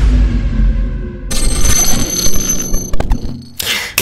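Logo-intro sound effects: a deep boom that dies away, then from about a second in a bright, ringing, bell-like electronic tone, a few clicks near three seconds in, and a short rising whoosh at the end.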